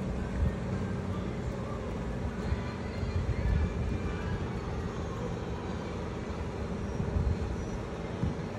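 Steady low rumble of outdoor background noise, with a few small surges and no distinct event.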